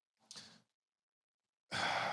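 A man's breathing at a close microphone: a faint short breath just after the start, then near the end a louder, drawn-out sigh-like exhale.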